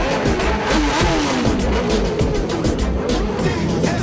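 Many sport motorcycle engines revving in a crowd, their pitch rising and falling, mostly in the first half. Under them runs hip-hop music with a steady bass beat.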